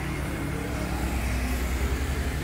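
Suzuki Satria motorcycle's two-stroke engine idling steadily.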